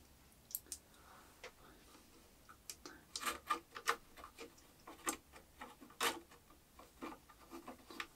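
Faint, irregular clicks and light taps of small metal hardware being handled: M5 bolts and a hex key worked into a metal bracket on the CNC's aluminium gantry.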